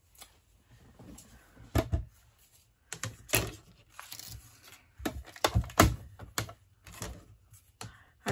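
A series of sharp knocks and clicks as a Mini Stampin' Cut & Emboss die-cutting machine and its clear plastic cutting plates are set down and handled on a cutting mat, with card stock shuffled between. The loudest clack comes just before six seconds in.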